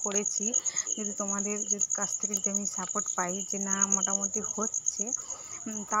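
A continuous high-pitched insect trill, like a cricket chirring, runs steadily throughout, with a woman's voice over it.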